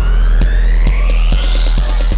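Electronic music with a heavy bass and a steady beat, under a synth sweep that climbs steadily in pitch as a build-up.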